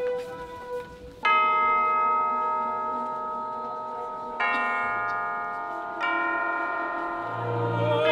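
Tubular bells (orchestral chimes) struck with a mallet three times, about a second in, about four and a half seconds in and at six seconds, each stroke ringing on and overlapping the last. A held note sounds before the first stroke, and a low note comes in near the end.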